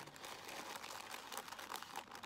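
Paper coffee filters crinkling in many small, faint crackles as hands bunch the stack and press it down into a plastic tub of dye.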